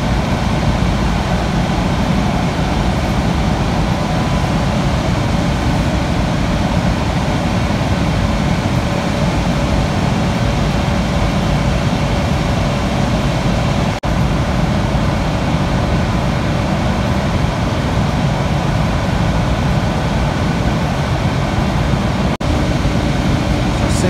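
Steady, loud whirring of cooling fans or air handling with a faint high whine, dropping out briefly twice.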